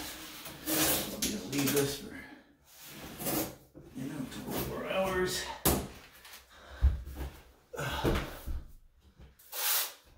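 Blue painter's tape pulled off the roll in a series of short rips and pressed along the panel seams of a tub surround, with rustling between pulls and a low thump about seven seconds in.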